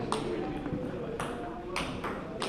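Table tennis ball striking bats and table in a rally: three sharp clicks, near the start, a little past halfway and again shortly after, over background voices.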